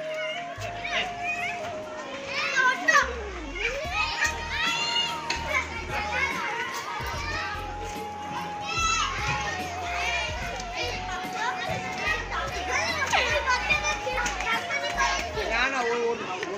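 Children at play, shouting and shrieking with many high, rising and falling calls over a crowd's chatter. A tune of long held notes plays underneath.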